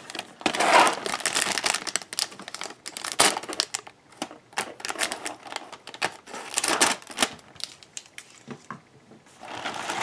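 A thin plastic cereal-bag liner crinkling and rustling inside a cardboard box as it is handled and cut open with scissors. It comes in irregular bursts of crackle with short pauses between them.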